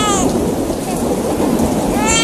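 Staged storm effect: a steady rush of heavy rain with low rolling thunder. A high child's vocal note glides down and fades just as it begins.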